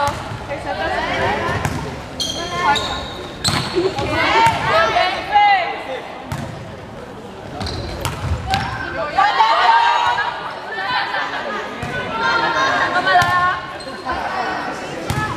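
Volleyball play in a sports hall: a series of sharp ball contacts and bounces on the court, mixed with players' voices calling and shouting.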